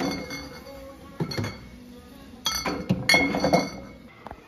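Glass beer bottles clinking against one another as they are stacked onto the wire shelf of a small drinks fridge, in several bursts of ringing clinks, the loudest near the end.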